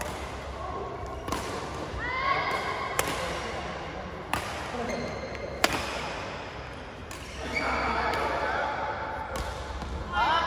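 Badminton rally on an indoor court: a series of sharp racket strikes on the shuttlecock, roughly a second apart, with voices in between.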